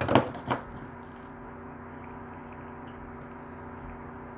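A few light clicks and knocks in the first half second as a stone dental model with acrylic teeth set in wax is handled, then a steady hum with a few held tones.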